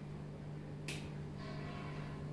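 A single sharp click about a second in, followed by a brief rustle, over a steady low electrical hum.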